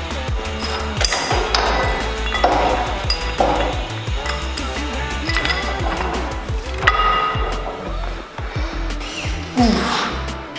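Background music with a steady beat, over metallic clinks and clanks of an iron weight plate being handled and loaded at a cable machine's weight stack; the sharpest clank, about seven seconds in, rings briefly.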